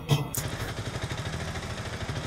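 Auto-rickshaw engine running steadily with street traffic around it, heard from inside the cab; a music cue cuts off just after the start.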